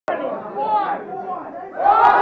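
Many voices talking over one another, swelling sharply into louder shouting near the end.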